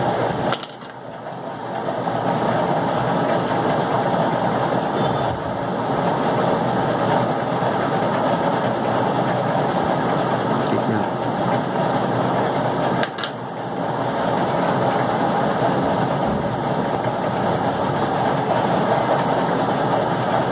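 Steady machine-like whirring noise, dipping briefly about a second in and again about thirteen seconds in.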